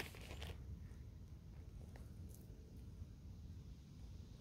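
Near silence: faint outdoor background with a steady low rumble and a few faint small clicks.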